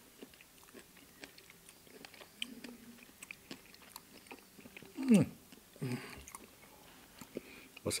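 Two men eating cake with spoons: a scatter of small clicks of metal spoons against the dessert cups and quiet chewing. About five seconds in, a man gives a short hum falling in pitch, and another short vocal sound follows about a second later.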